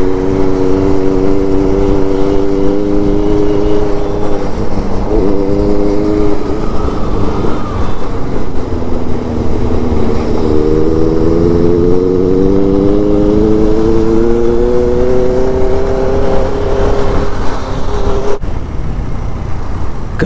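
KTM Duke 200's single-cylinder engine running as the bike rides along, over a heavy low rush of wind on the microphone. Its pitch dips and recovers about five seconds in, drops again around ten seconds in, then climbs steadily for several seconds as the bike accelerates.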